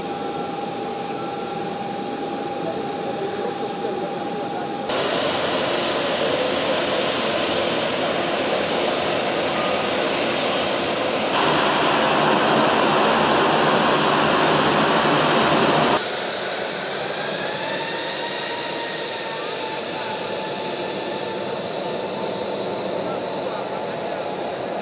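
Twin-engine jet airliner's engines running with a steady roar and whine, louder in the middle stretch and with the whine sliding up and down in pitch in the last part as the jet taxis.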